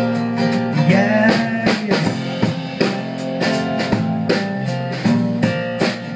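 Live band playing an instrumental passage between sung lines: strummed acoustic guitar, electric bass and a drum kit keeping a steady beat.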